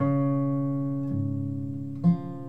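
Acoustic guitar: a chord strummed once and left ringing as it slowly fades, with the bass note changing about a second in.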